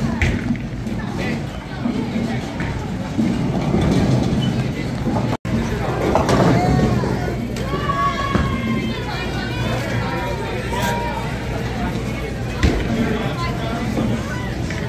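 Bowling alley din of voices and chatter with background music, broken by a brief gap about five seconds in. Higher voice-like calls stand out in the second half.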